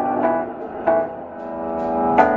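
Live band music: electric guitar and keyboard holding ringing notes, with a new note struck about three times in two seconds.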